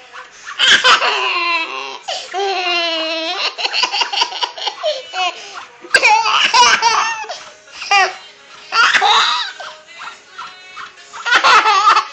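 A baby laughing hard in repeated bursts at being scratched, with a run of quick, rhythmic laughs about two to three seconds in.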